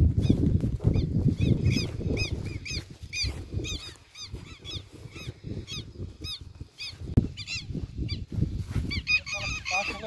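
Birds calling in a rapid series of short, sharp, repeated calls, over a low rumbling noise on the microphone that is strongest in the first two seconds.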